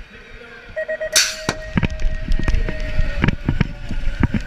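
BMX start-gate cadence: three quick beeps, then a long steady tone. As the long tone begins, the gate drops with a sharp burst of noise. The bikes then roll off down the metal start ramp with a low rumble and repeated clacks from the chains and frames.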